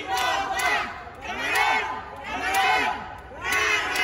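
Crowd of fans shouting and cheering in rhythmic swells, about one a second.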